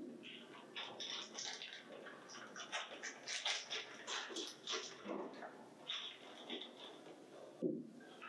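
Clear plastic bag crinkling and rustling in the hands as it is opened and a small connector plug is taken out, in quiet irregular bursts of crackle.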